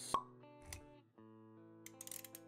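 Intro music with held notes, cut by a sharp pop sound effect just after the start and a softer click with a low thud about three-quarters of a second in. The music dips briefly around the one-second mark, then comes back.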